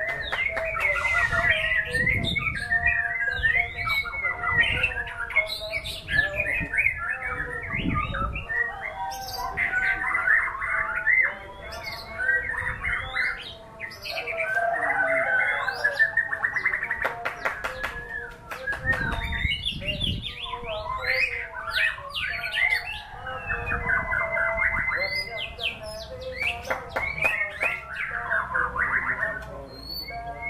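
A caged white-rumped shama (murai batu) singing a long, varied song of whistles, rising and falling glides, trills and sharp clicks, broken by a few brief pauses.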